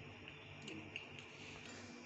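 Quiet room tone: a faint steady electrical hum with a few soft ticks about a second in.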